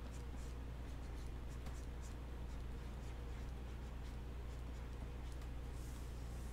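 Light, irregular scratching strokes of a stylus drawing on a Wacom pen tablet, over a steady low electrical hum.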